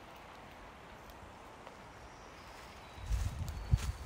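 Faint steady outdoor hiss, then about three seconds in a run of low thuds and scuffs from footsteps on a forest trail, with one sharper, louder step near the end.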